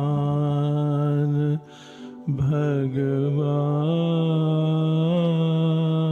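A male voice chanting a mantra in long, steady held notes. It breaks for a breath about a second and a half in, then slides into another long held tone.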